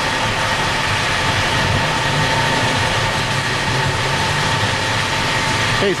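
Petrol pump dispensing fuel through the nozzle into a car's tank: a steady whir with an even hum, the fuel flowing slowly.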